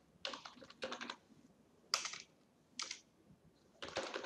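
Computer keyboard typing, faint: a quick run of keystrokes in the first second, then single key presses about a second apart.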